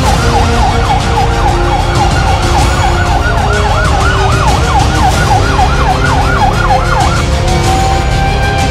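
Fire truck siren on yelp, fast rising-and-falling sweeps at about three to four a second, switching near the end to a single long falling tone as it winds down.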